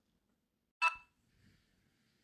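Near silence broken by a single short clink about a second in, ringing briefly before it fades.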